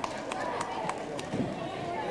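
Murmured talk with a short run of sharp taps, evenly spaced about a third of a second apart, that stops a little past halfway.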